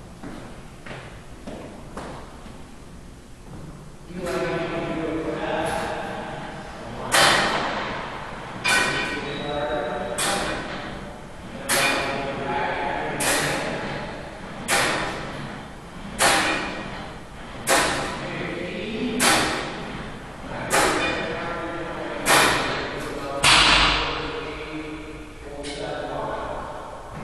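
A racquetball being hit hard about every second and a half, each sharp crack ringing on in the enclosed court. Voices talk underneath.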